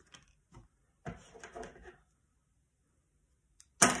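Hands handling paper and cardstock: a few light clicks, then a short rustle about a second in, as twine is worked through a small pierced hole in the paper. A voice starts near the end.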